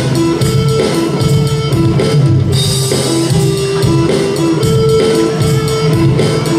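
A live band plays a Bengali song on electric and acoustic guitars and keyboard. About two and a half seconds in, a bright shimmer like a cymbal comes in.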